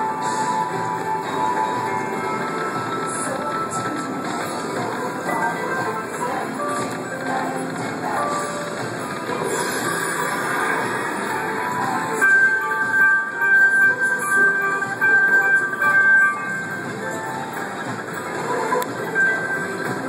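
Dragons Vault video slot machine playing its free-games bonus music and reel-spin chimes, over a dense, steady wash of other machines' sounds. A bright held chime pulses for a few seconds about twelve seconds in.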